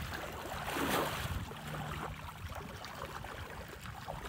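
A cow wading through shallow floodwater, its legs sloshing and splashing, loudest about a second in and then easing off.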